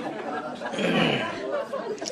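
Speech: people talking, with several voices chattering over one another.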